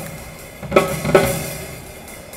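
A large live band playing with the drum kit to the fore. Two sharp accented ensemble hits come about three-quarters of a second and just over a second in.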